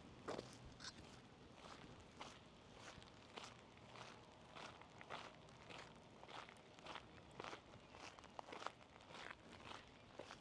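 Faint footsteps of a person walking on gravel, an even pace of about two steps a second.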